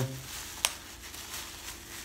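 Plastic bubble wrap crinkling and rustling in the hands as it is pulled open, with one sharp crackle a little over half a second in.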